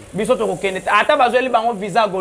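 A man speaking, his voice running on with no pause.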